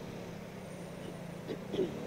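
A pause in a man's speech filled by faint outdoor street background noise with a low steady hum, and a brief soft vocal sound from the speaker about one and a half seconds in.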